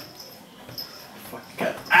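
A pet animal gives one short, high call about one and a half seconds in, in a quiet room.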